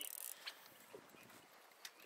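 Faint sound of a spinning reel being cranked to wind monofilament line onto the spool under tension, with a couple of light clicks.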